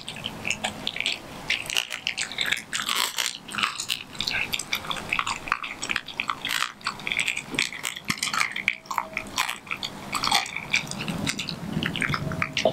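A German shepherd mix dog chewing raw meat: a continuous, irregular run of quick clicks and smacks from its jaws.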